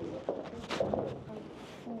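Low, indistinct voices of people in a room, with a brief rustle just under a second in, like a curtain or paper being handled.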